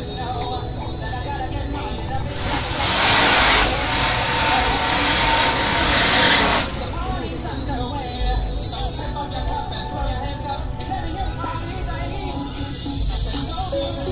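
Two cars launching hard off a drag-strip start line: a loud rush of engine and spinning-tyre noise lasts about four seconds, beginning a couple of seconds in and cutting off fairly sharply. Music from the event's PA plays underneath.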